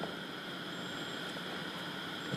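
Steady low hiss of background noise with no speech: the recording's room tone and noise floor.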